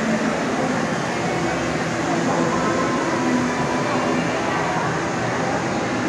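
Shopping-mall ambience: a steady wash of indistinct voices and echoing hall noise.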